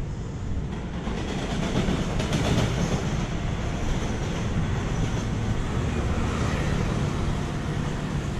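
Passenger train running past on the electrified railway below, a steady noise of wheels on rails.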